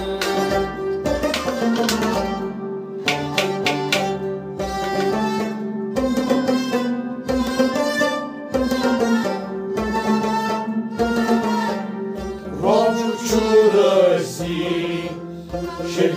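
Kashmiri Sufi folk music: a harmonium holds steady notes under a bowed sarangi melody, with a steady hand-drum beat. The bowed line swells loudest about three quarters of the way through.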